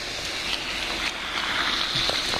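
Steady rushing noise, growing slightly louder, with a few faint crunches of footsteps on snow.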